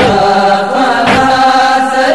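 A male reciter chanting a nohay, an Urdu Shia mourning lament, in long held notes. Sharp beats fall about once a second under the voice.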